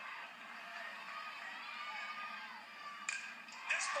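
Ballpark crowd noise played through a television speaker, then about three seconds in a sharp crack of the bat hitting the ball on a home-run swing, and the crowd noise swells just after.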